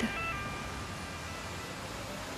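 Soft background music of a few quiet held notes, with a low, even street-traffic hum beneath.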